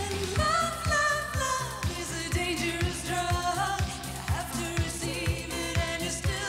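Synth-pop song performed live: a woman's lead vocal comes in just after the start, singing held and gliding notes over a steady kick drum beating about twice a second and a low bass line.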